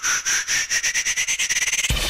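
A rapidly pulsing tone that rises in pitch and speeds up, working as a lead-in to a theme song. Music with drums and bass comes in near the end.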